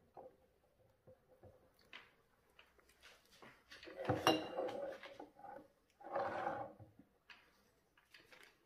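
Empty glass jars being handled and set down on a bench while honey is bottled from a bucket's tap: faint clicks, then a sharper knock of glass about four seconds in. A short muffled sound follows a couple of seconds later.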